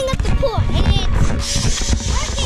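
A child shouting and squealing close to the microphone over loud low rumble from wind and handling, with background music underneath.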